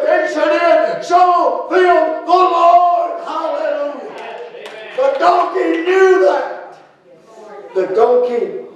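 Speech only: a man preaching in a loud, drawn-out voice, words not made out, dropping away briefly near the end.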